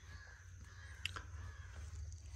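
A bird calling once, a short call about a second in, faint over a low steady rumble.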